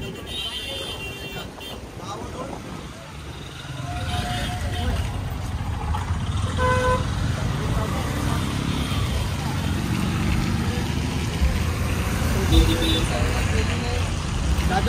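Road traffic in a jam: vehicle engines running as a steady low rumble that grows louder a few seconds in. A short horn toot sounds about seven seconds in, with voices in the background.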